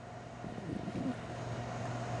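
Room tone: a steady low hum from the shop, with faint indistinct sound slowly building in the second half.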